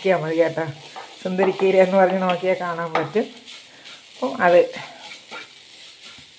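A spatula stirring and scraping amaranth thoran in a nonstick frying pan over a light sizzle, under a person's laughter in repeated pulses for about the first three seconds and again briefly in the middle.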